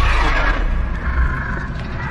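Cinematic sound effects: a loud, deep rumble with a rough, drawn-out roar-like noise over it that eases off near the end.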